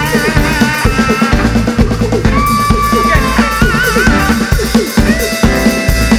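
Live reggae band playing: a drum kit with dense, regular hits over a steady bass line, guitar and keyboards, with long held melody notes that waver slightly.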